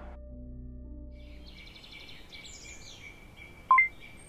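Soft background music with low held notes fades out, and birds chirp over faint outdoor ambience. Near the end comes a short, loud two-note electronic beep that steps up in pitch.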